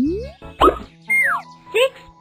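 Cartoon sound effects over children's background music: a quick rising whistle-like glide, a short pop about half a second in, and a falling whistle-like glide about a second in, as the answer box appears. Near the end a voice begins to say 'Six'.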